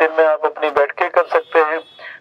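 Speech only: a man speaking Hindi into a handheld microphone, in quick continuous phrases.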